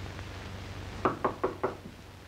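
Four quick knocks on a door, evenly spaced, starting about a second in.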